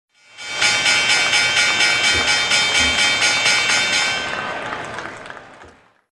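Short synthesized intro sting for a channel logo: a bright sustained chord pulsing about five times a second, fading out over its last two seconds.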